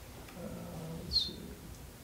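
A man's voice murmuring quietly and low, as a drawn-out hesitation sound, then a short soft 's' hiss about a second in.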